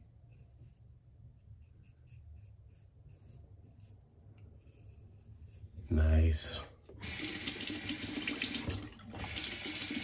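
Faint scratching of a double-edge safety razor's short strokes through long stubble. About seven seconds in, a bathroom tap is turned on and runs steadily into the sink for rinsing.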